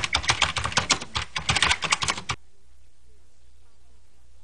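Typing sound effect: a quick run of keystroke clicks as on-screen text types itself out, lasting a little over two seconds and then stopping suddenly.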